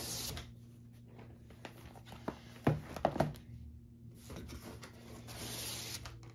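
Shrink-wrapped cardboard boxes being handled on a wooden table: a rustling slide of plastic wrap, then a few light knocks about three seconds in as a box is set down, and another rustling slide near the end.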